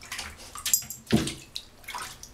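German shepherd pawing and splashing in shallow bathtub water: a few irregular splashes, the loudest a little past the middle.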